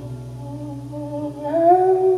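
A woman humming a long held note over a steady low synth and bass drone; about one and a half seconds in, her voice rises to a higher, louder held note.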